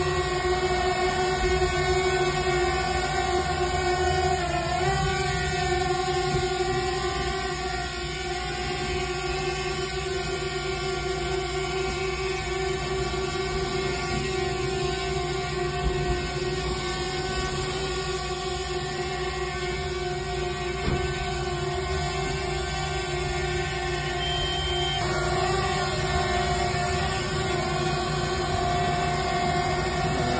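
Small drone hovering: a steady, multi-toned whine from its propellers, its pitch dipping briefly and recovering about four seconds in and shifting again near twenty-five seconds as the thrust is adjusted.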